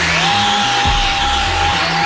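Electric motor of a 4WD RC car on an 8S battery running flat out in a burnout, wheels spinning on tarmac. It makes a steady high whine that climbs quickly at the start and then holds, over a hiss. Background music with a steady beat plays underneath.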